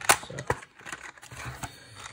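Clear plastic box of pencils being pried open by hand: irregular crinkling and sharp clicks of the plastic lid, the loudest snap just after the start.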